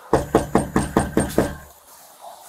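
Knocking on a house's front door: seven quick, even raps in a bit over a second.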